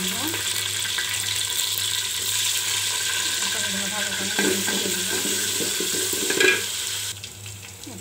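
Sliced onions sizzling loudly in hot oil in an aluminium pot, stirred with a wooden spatula. The sizzle drops off sharply about seven seconds in.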